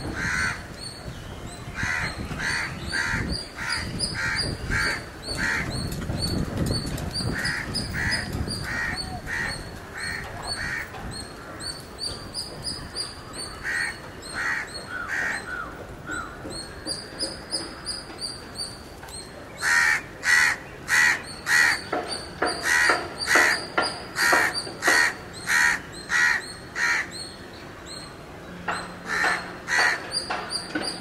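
Birds calling in repeated runs of short calls, about two or three a second, with the loudest and longest run in the second half.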